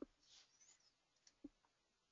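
Near silence with two faint computer mouse clicks, one at the start and one about a second and a half later.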